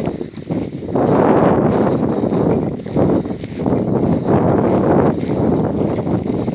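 Wind buffeting the microphone: a loud, gusting rumble that swells up about a second in and rises and dips.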